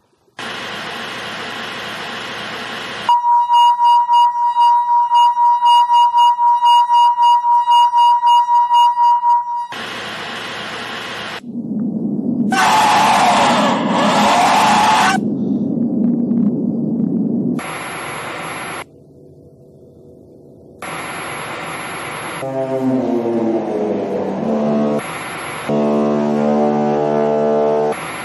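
Bursts of static hiss cut together with electronic sounds: a high steady beep pulsing about twice a second, a harsh noisy passage, then a pitched tone that falls in pitch and a steady pitched drone near the end.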